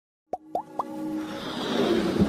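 Animated intro sound effects: three quick pops, each rising in pitch, about a third, a half and three-quarters of a second in, followed by a swelling whoosh with music tones building underneath.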